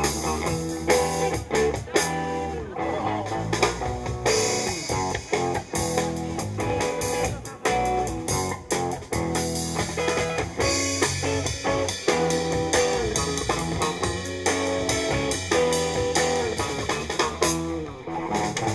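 Live band playing an instrumental passage: electric guitar lines over electric bass and a drum kit, with steady drum hits.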